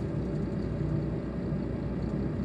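Diesel engine of a MAN TGL 12.240 truck, an inline four-cylinder, running at low revs as the truck manoeuvres slowly: a steady low rumble.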